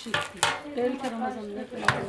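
A long wooden stick knocking against a hot domed iron griddle (sac) as a sheet of yufka flatbread is turned on it: two sharp clicks, about half a second in and a louder one near the end, with voices in the background.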